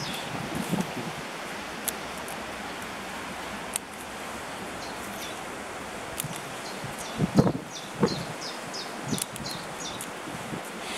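Dry fireweed (rosebay willowherb) stalk being stripped and pulled apart by hand, with rustling and small crackles and snaps of dry plant fibre; the louder crackles come about seven to eight seconds in. A steady hiss of wind in the trees runs underneath.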